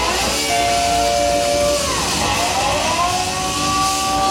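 Electric oil can guitar played through an amp, holding long sustained notes with a sweeping, whooshing tone, over bass and drums.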